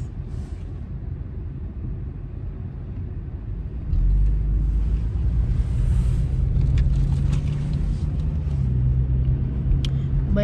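Car cabin noise while driving: steady engine and road rumble that gets much louder about four seconds in as the car picks up speed, with a few faint clicks.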